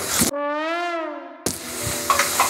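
A single brass-horn-like note edited in as a sound effect, its pitch swelling up and sliding back down over about a second as it fades, with all other sound cut away beneath it. About a second and a half in, the sizzle of potato slices frying in hot oil comes back.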